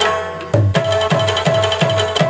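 Tabla played in a lively rhythm, its low strokes bending down in pitch, with a hand-played barrel drum alongside.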